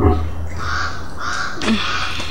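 A bird calling over and over in short, evenly repeated calls, about two a second.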